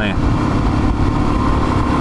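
Motorcycle engine running steadily at cruising speed, with wind rumbling on the onboard microphone.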